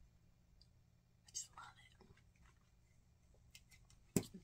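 Near silence: room tone with a steady low hum, a brief faint vocal sound about a second and a half in, and a few light clicks near the end as plastic dolls are handled.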